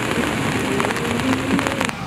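Steady rushing noise of rough sea surf and weather, with a rapid crackle of clicks in the second half. The sound changes abruptly just before the end.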